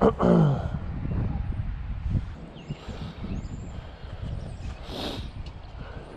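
A man clears his throat with a short low grunt that falls in pitch at the start. Then wind buffets the microphone as a steady low rumble.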